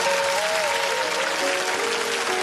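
Audience applauding over the song's closing backing music, which holds a few sustained notes.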